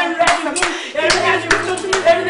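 People clapping their hands, a run of sharp claps at roughly two to three a second.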